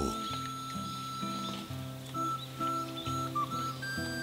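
Background music with slow, held notes that change every half second or so.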